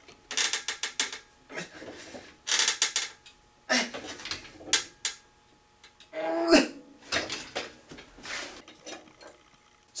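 Everlast home gym's chest-press arms and weight stack clattering and creaking in irregular bursts as the bars are pushed against a 30-pound setting. A short strained grunt comes about six and a half seconds in.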